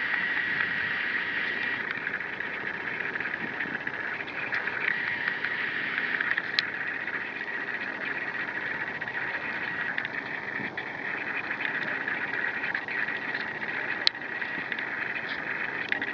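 A steady high-pitched insect drone over light water splashing from a kayak paddle, with two sharp clicks, one about six and a half seconds in and one near the end.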